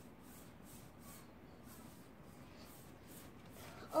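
Paintbrush stroking chalk paint onto the wooden side panel of a bookshelf, a faint, repeated scratchy brushing.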